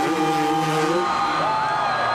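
A dirt bike engine held at steady high revs through the first second, with crowd cheering and whooping as the bike flies off the jump.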